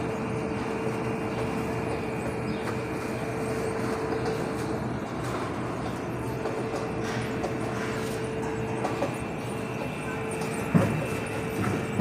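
Automated bread production line running: conveyor and gear motors give a steady mechanical noise with a constant hum and a faint high whine. There is a single knock near the end.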